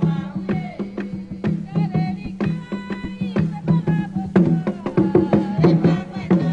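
Haitian Vodou ceremonial drumming, a dense run of quick hand-drum strikes over a steady low drum tone, with voices singing a chant over it, strongest in the middle: the song invoking the spirit Legba.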